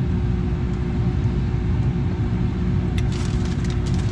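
Steady low rumble inside a car cabin, with a few faint clicks about three seconds in.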